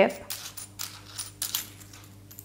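Faint, scattered small metal clicks and scrapes as the tip and barrel of a mains soldering iron are taken apart by hand.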